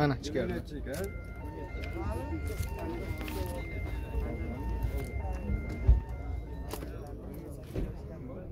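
A simple electronic tune of short beeping notes at a few pitches, repeating for about six seconds, with voices talking in the background.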